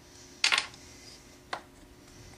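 A small turned yellowheart wooden piece being pulled off its dowel mandrel and handled: a short knock or clatter about half a second in, then a single sharp click about a second later, over a faint steady hum.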